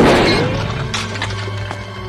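A sudden gunshot at the start, followed by glass shattering and pieces falling over the next second or so, over tense orchestral film music.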